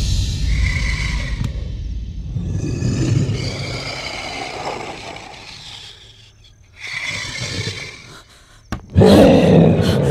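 Film monster's roar sound effect, starting suddenly and rumbling deep for about five seconds before fading. About nine seconds in, a sudden loud burst of sound cuts in.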